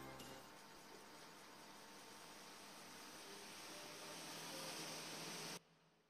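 The last notes of a karaoke backing track die away, leaving a faint steady hiss from the recording's noise floor. The hiss swells slightly, then cuts off suddenly just before the end.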